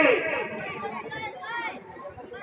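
A long held, amplified vocal note from a stage performer slides down in pitch and ends at the start. It is followed by scattered speech and crowd chatter.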